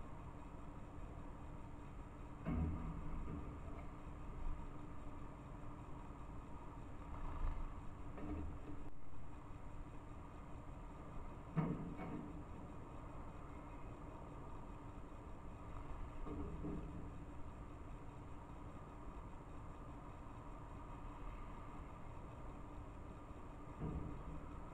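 Faint steady hum over a low outdoor rumble, broken by a handful of short dull knocks.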